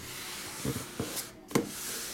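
Sealed cardboard case being turned and slid by hand on a tabletop: cardboard rubbing, with a few dull knocks, the loudest about a second and a half in.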